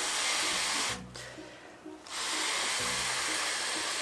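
A person blowing into a foil party balloon to inflate it: a long steady exhalation that stops about a second in, a pause for breath, then a second long exhalation from about two seconds in until near the end.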